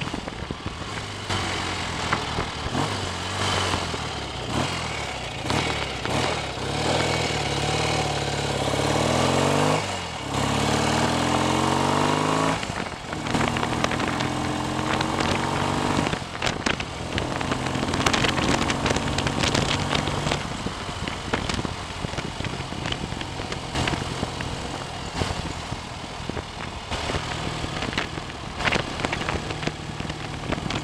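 BSA A65 650 cc parallel-twin engine pulling the motorcycle along, freshly rebuilt and being run in. It climbs in pitch under acceleration, drops back at a gear change about ten seconds in, climbs again and drops near thirteen seconds, then runs more steadily. Wind and wet-road hiss run under it.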